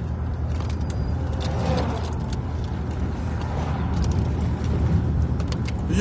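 Inside a moving car's cabin: a steady low rumble of engine and road noise while driving.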